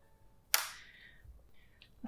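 A single sharp click or tap about half a second in, fading out over the next half second, from a hard object set down or knocked against a hard surface.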